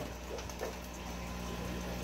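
Steady low hum and hiss of aquarium equipment, such as filters and pumps, running in a room full of fish tanks.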